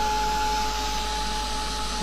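Craft heat gun running steadily, blowing hot air: an even fan whir with a constant whine.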